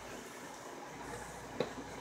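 Dog gnawing on a ham bone: faint chewing with one sharp click of tooth on bone about one and a half seconds in, over a steady low room hum.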